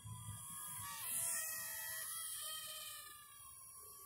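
Faint whine of a small toy quadcopter's motors flying some distance off, several high tones wavering up and down independently as the motors adjust.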